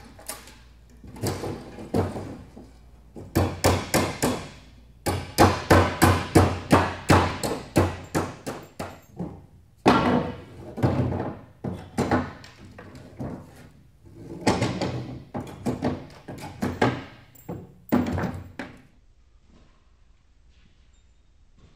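Hammer blows on a wooden pallet as its boards are knocked apart: strings of sharp knocks, several a second, in bursts with short pauses between.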